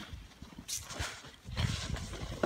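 Snowboard sliding and scraping over snow in uneven bursts, with a short hiss about two-thirds of a second in, and wind rumbling on the microphone near the end.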